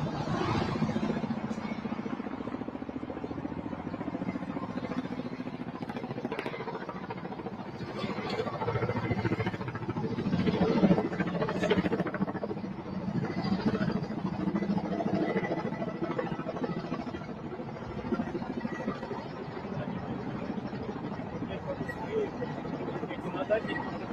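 Steady outdoor traffic and engine noise, growing louder in the middle, with faint voices mixed in.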